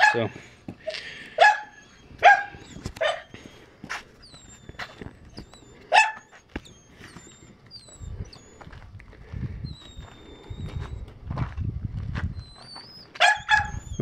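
A dog barking in short, sharp single barks with irregular gaps between them: a dog shut in and barking to be let out.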